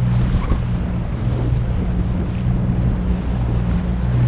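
Outboard motor of an inflatable Zodiac skiff running at a steady pitch under way, with water splashing along the hull and wind on the microphone.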